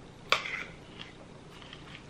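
Eating a mouthful of raw kale salad: one sharp crunch about a third of a second in, then a few faint chewing clicks.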